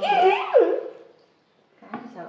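A child's high-pitched whining squeal, about a second long, its pitch rising and then dropping sharply.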